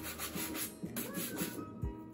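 Bristle shoe brush rubbed quickly back and forth over a black leather shoe, a rapid run of short scrubbing strokes that stops about a second and a half in.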